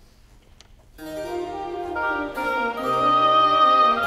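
A baroque orchestra of strings with harpsichord continuo begins playing on the conductor's cue about a second in, after a faint click in a hushed room, and carries on with a flowing instrumental passage.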